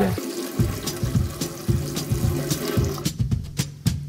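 Tap water running over a cork fishing-rod handle and a gloved hand into a stainless steel sink, rinsing off the bleach; the water stops about three seconds in.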